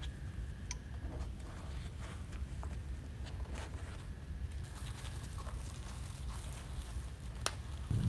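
Faint rustling and light scattered clicks of wired ribbon being handled and folded on a cutting mat, with a couple of sharper ticks, over a low steady hum.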